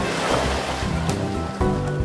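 Sea surf washing into the shallows, under background music; near the end the surf fades out and the music carries on alone.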